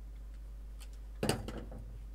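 A short clatter of a few small hard knocks about a second in, as something is set down or handled on the work table, over a steady low electrical hum.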